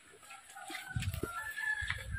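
A rooster crowing faintly, one drawn-out call that steps up in pitch from about a second in, over low rustling and knocking close by.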